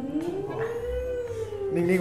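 A man's long open-mouthed vocal cry, strained and pained, rising in pitch, holding, then falling away over about a second and a half.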